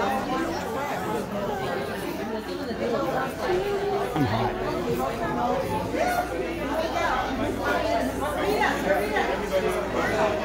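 Indistinct chatter of many people talking at once, with overlapping voices and no single clear speaker.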